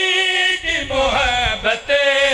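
Several men's voices chanting a line of devotional verse together through a microphone, in long held notes with a falling, wavering passage in the middle.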